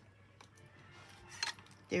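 Faint handling noise from craft materials: a light click, then a couple of sharper clicks about a second and a half in, as a clear acrylic plate and card pieces are shifted on the desk.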